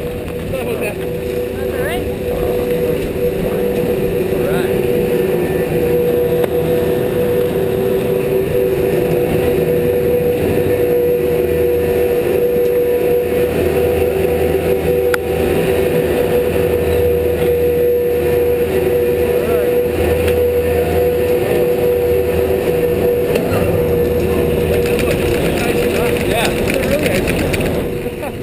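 Chairlift base-terminal machinery running with a steady whine and a low hum. It fades near the end as the chair carries the rider out of the station.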